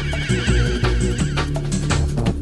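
Jungle drum and bass music: fast breakbeat drums over deep bass. During the first second, a high warbling sound wavers rapidly up and down in pitch.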